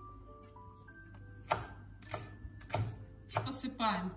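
Chef's knife chopping dill and green onions on a bamboo cutting board: four sharp knife strikes against the board, evenly spaced a little over half a second apart, in the second half.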